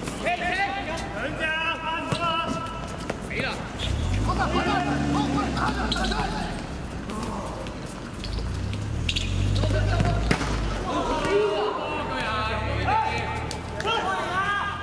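Players shouting to one another on a hard outdoor court, with scattered thuds of a football being kicked and bouncing. A low rumble comes and goes in the middle.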